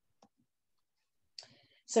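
Mostly near silence, with a faint click early on and a sharper click followed by a short hiss about a second and a half in, just before a woman starts to speak.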